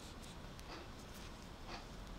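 Metal knitting needles working knit stitches in acrylic yarn: faint, regular scraping strokes, about two a second, as each stitch is made.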